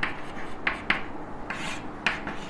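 Chalk writing on a blackboard: a few short scratchy strokes, with one longer stroke near the end.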